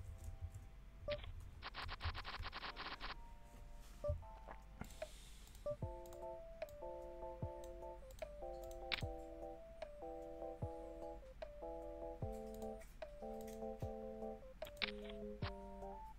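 Background music of soft sustained chords, the chords changing about once a second, with scattered short clicks. About two seconds in there is a run of rapid ticks, about ten a second, lasting a second and a half.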